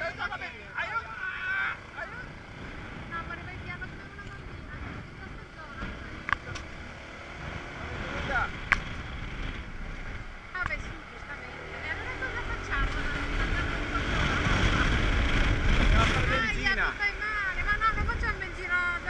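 Wind and road noise from a Honda SH300 scooter ride, a low rumble that swells louder in the last few seconds, with a couple of sharp knocks along the way and muffled talking.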